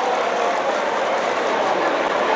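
Audience applauding and cheering, a steady dense clatter with no music left in it.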